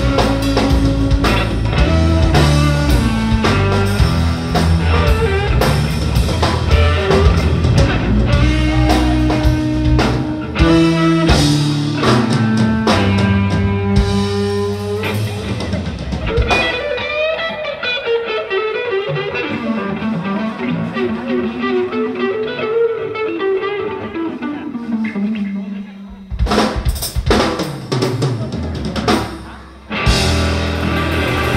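Live blues-rock band playing electric guitar, bass and drum kit. About halfway through, the bass and drums drop out and the electric guitar plays alone with long, bending notes, then a few loud drum hits come in near the end.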